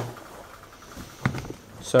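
Quiet room tone with a single short knock about a second in, then a word of speech near the end.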